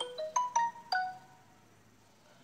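A short electronic jingle of five quick notes, rising then falling and over within about a second, like a phone notification tone.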